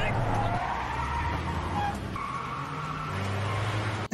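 A car accelerating hard with its tyres squealing on a concrete garage floor, as heard in a TV drama's chase-scene sound mix.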